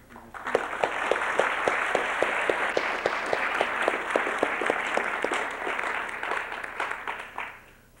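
Audience applauding for about seven seconds, dying away near the end. One nearby clapper's steady claps, about four a second, stand out from the rest.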